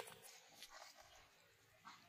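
Near silence: faint outdoor background with a couple of faint clicks.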